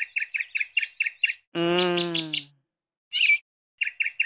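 A bird chirping in a fast, evenly spaced run of short high notes, about eight a second, that breaks off about a second and a half in and starts again near the end. In the gap comes a drawn-out voiced sound about a second long, slightly falling, and then a single short call.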